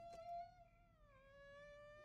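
A faint, drawn-out, high-pitched whine from an animated pigeon character's voice as it is squashed against a car windshield. It is one long note that dips lower about halfway through, then holds.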